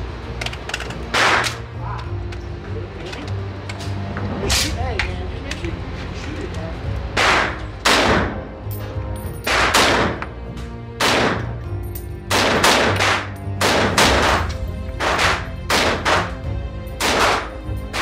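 A DSA SA58 .308 semi-automatic rifle firing about fourteen single shots at uneven intervals, some close pairs about half a second apart and some gaps of up to three seconds. Each shot echoes briefly off the walls of the indoor range.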